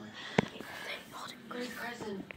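Quiet voices talking, too soft to make out words, with one sharp click about half a second in.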